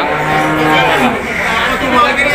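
A cow mooing once: one long, steady call of about a second that drops in pitch as it ends.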